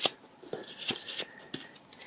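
A paper cutout being picked up and handled on a tabletop: a handful of small, separate clicks and taps.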